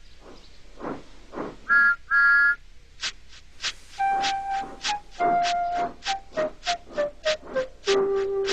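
Two short toots of a steam-engine whistle sound effect about two seconds in, the second a little longer. From about three seconds in, background music starts, with a steady chuffing beat and a melody that comes in about a second later.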